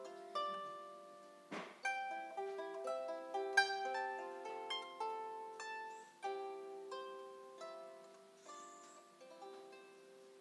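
Solo harp being plucked: a slow melody over chords, each note ringing and dying away. The notes grow sparser and quieter near the end.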